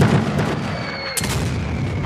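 Cannon fire: two booms, one at the very start and one a little past a second in, each trailing off.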